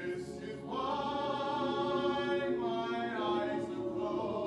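Mixed-voice choir singing sustained chords. It swells louder with a rise in pitch a little under a second in, then moves to a new chord near three seconds.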